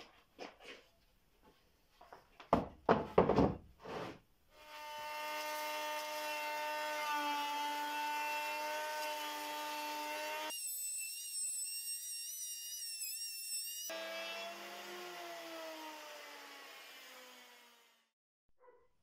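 A few knocks of boards being handled, then an electric plunge router runs with a steady whine from about four and a half seconds in, cutting a slot along the edge of a wooden board for a loose tenon. Near the end its pitch falls as it winds down.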